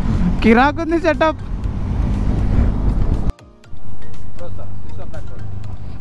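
Low engine and wind rumble from a motorcycle on the move, with a brief voice about half a second in. The sound breaks off sharply a little past three seconds, drops away for a moment, then gives way to a steady, slowly fading sound.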